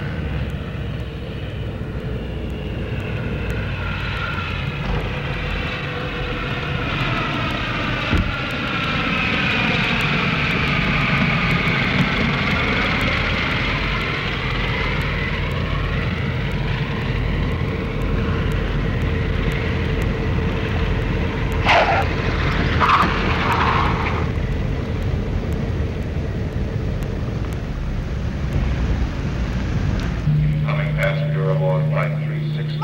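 Propeller airliner's piston engines droning through a landing approach and touchdown, with a pitch sweep that falls to a low point midway and rises again. Two brief sharp sounds come about two-thirds of the way through.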